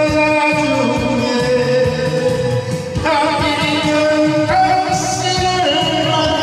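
A man sings karaoke-style into a handheld microphone over a trot backing track with a steady beat. He holds long notes, with vibrato on one of them about halfway through.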